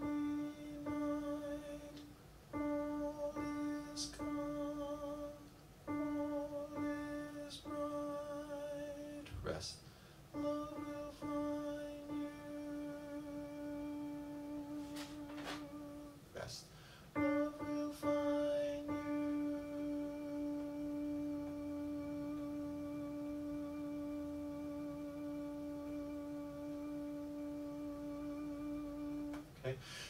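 The soprano part of a choral SATB arrangement is demonstrated as a single wavering melody line. It runs as several short phrases on much the same pitch, then one note held for about twelve seconds: the part's three-measure hold. A few faint clicks fall in the first half.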